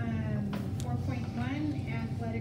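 Indistinct speech in a meeting room, with a faint steady hum underneath and a brief click a little over half a second in.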